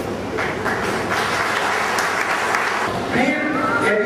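Audience clapping in a large hall, with a man's voice starting again near the end.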